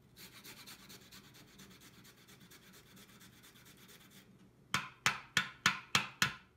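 Fresh unpeeled ginger root being grated on a long stainless rasp grater: a quick, even run of light scraping strokes. Near the end come five sharp knocks, the grater tapped on the wooden cutting board.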